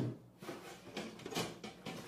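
Cuisinart TOB-1010 toaster oven: a sharp metal clack as the drop-down door opens, then a run of light metal clinks and scrapes as the baking pan is slid out along the oven rack.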